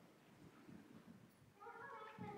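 Near silence: faint shuffling of a congregation getting to its feet, with a faint high squeak starting near the end.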